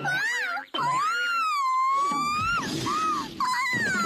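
A very high-pitched cartoon-style voice making short wavering cries, then one long held cry that glides slowly. In the middle it gives way to a noisy stretch with a low rumble under it, and more high wavering vocalising follows near the end.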